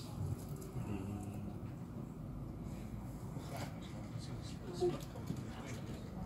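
Indistinct voices of people talking in the background over a low, steady rumble.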